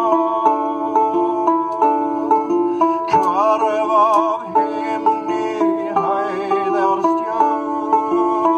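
Kravik lyre plucked in a steady, repeating figure of a few notes. A man's voice sings long, wavering notes over it twice, about three seconds in and again about six seconds in.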